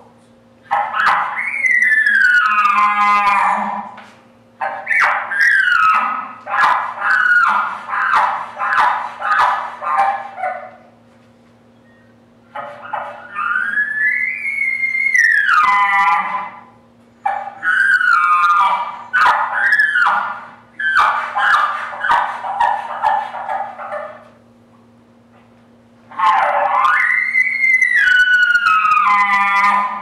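Man-made bull elk bugles blown through a bugle tube: four long calls, each gliding up to a high whistle and falling away, with runs of quick chuckles between them.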